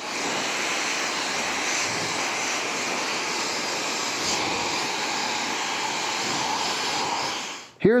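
Handheld hair dryer blowing steadily as short hair on a mannequin head is blow-dried, then cutting off abruptly near the end.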